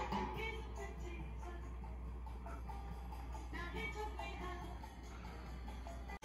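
Music from a vinyl record playing on a 40- to 50-year-old German record player, heard through its amplifier across the room, fairly faint, with a steady low hum underneath.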